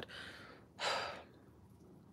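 A woman sighing once, a short breathy exhale about a second in, in exasperation.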